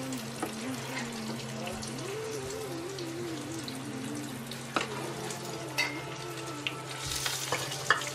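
Battered pieces deep-frying in hot oil in a pot, sizzling steadily, while a metal slotted spoon stirs them, clinking against the pot a few times past the middle.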